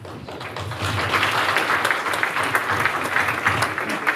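Audience applause: many hands clapping together, building over the first second and then holding steady at full strength.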